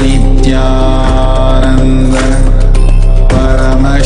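Devotional music: a chanted mantra sung over a steady low drone, loud and continuous.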